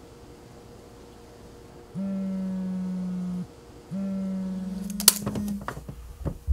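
A mobile phone on vibrate buzzing against a tabletop with an incoming call: two steady buzzes of under two seconds each, half a second apart, starting about two seconds in. A few sharp knocks come near the end.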